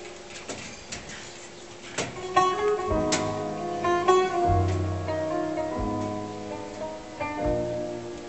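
Oud plucked in a run of single notes, with a low bass line and fuller sustained notes coming in about three seconds in.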